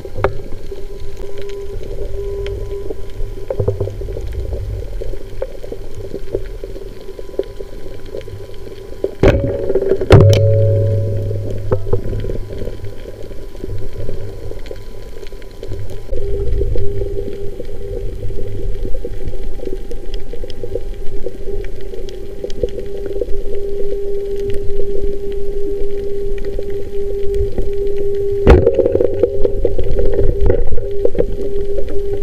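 Underwater ambience picked up by a camera in a waterproof housing: a steady low hum over a water rumble, with two sharp knocks about nine and ten seconds in and another near the end.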